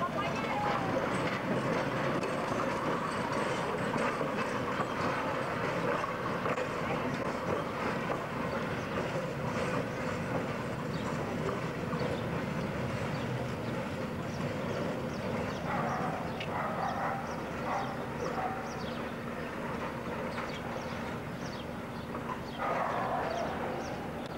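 Brill electric interurban car rolling along street track and pulling away, its running noise steady with scattered clicks from the wheels and track. Voices of passengers and onlookers come through at times.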